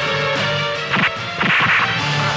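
Film fight sound effects: a sharp whack about a second in, followed by a short swishing whoosh, over background music.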